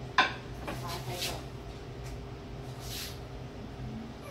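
One sharp clack of crockery a moment in, then quieter clinks and knocks as chopsticks and a plate of steamed prawns are handled on a kitchen counter, over a steady low hum.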